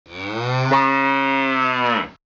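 A cow mooing once: a single long, low call held at one steady pitch, cut off suddenly at the end.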